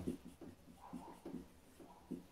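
Dry-erase marker writing on a whiteboard: a run of short, faint strokes as letters are written.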